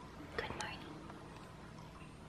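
A faint, brief whisper about half a second in, over quiet room tone.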